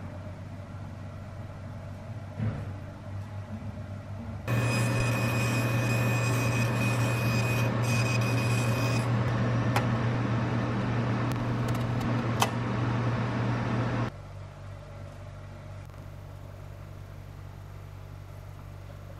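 A machine's motor or fan starts up and runs steadily for about ten seconds with a strong low hum, a high steady whine for the first half and a few sharp clicks, then cuts off suddenly; a lower background hum continues.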